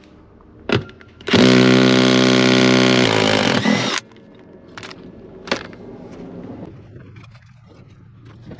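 DeWalt 12V cordless impact driver backing out a seat-mounting bolt in a vehicle's floor: a short burst, then a steady run of about two and a half seconds that cuts off suddenly, then two more quick bursts.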